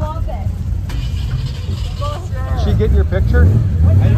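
Nearby people talking over a steady low rumble, which grows louder in the second half.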